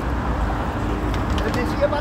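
Steady low rumble of background vehicle or traffic noise with a faint constant hum, no single event standing out.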